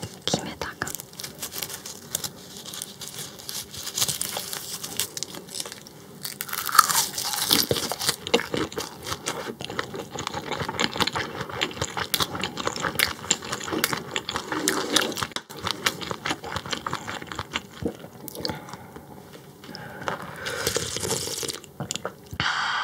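Close-miked chewing of raw croaker sashimi: dense, irregular wet mouth clicks and soft smacks that keep going, with a few louder bursts of chewing.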